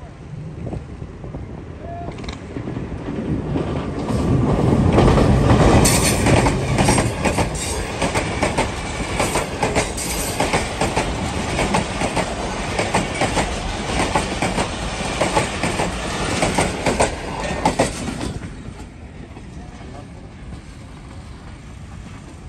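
Jaffar Express passenger train, a diesel locomotive hauling coaches, passing close at speed. The rumble builds for the first few seconds, then comes a rapid, dense clatter of wheels over the rail joints for about fourteen seconds. The sound drops off sharply near the end as the last coach goes by.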